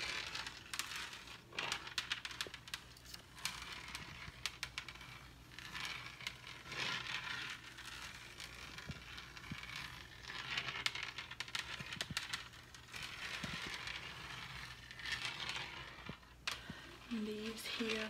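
Long fingernails tapping and scratching on a refrigerator door: runs of quick sharp clicks mixed with scratchy rubbing that swells and fades every few seconds.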